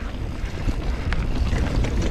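Wind buffeting an action camera's microphone over the rattle and knocks of a mountain bike descending a dirt trail at speed, its tyres rolling over the ground.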